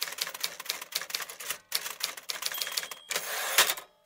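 Typewriter keys clacking in a fast, irregular run, as a sound effect, with a short rasping stretch near the end that closes on one louder clack.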